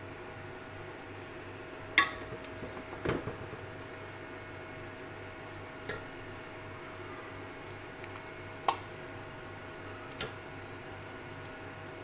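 Steel serving spoon clinking against a ceramic plate and a steel pot as rice is dished out: about five separate sharp clinks, the loudest about two seconds in. A steady faint hum runs underneath.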